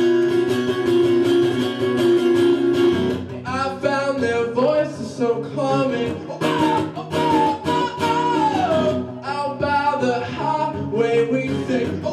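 Live solo acoustic guitar, strummed in a steady rhythm. A man's singing voice comes in over it about three seconds in.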